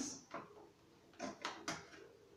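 Faint handling sounds of scissors and wrapping paper: three or four short, sharp clicks a little after a second in, as the paper is marked for cutting against a tin can.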